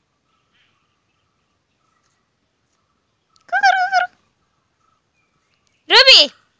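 A puppy playing with other dogs gives two short, high-pitched whining yelps: one about halfway through with a wavering pitch, and a louder one that rises and falls at the very end.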